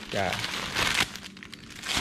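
Thin plastic bag crinkling as it is picked up and handled, in a few crackly spells.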